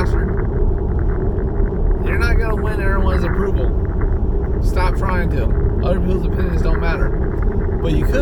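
Steady road and engine noise inside a moving car's cabin, a constant low rumble and hiss. A man's voice comes through in short bursts in the middle.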